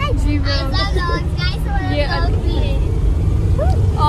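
Steady low rumble of a passenger van's engine and road noise heard from inside the moving cabin, with female voices chattering over it.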